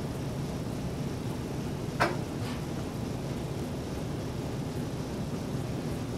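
Steady low room hum in a quiet classroom, with a single sharp click about two seconds in.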